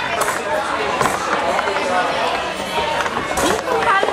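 Table-football game: a few sharp knocks of the ball struck by the rod figures, under overlapping voices of people talking and calling out.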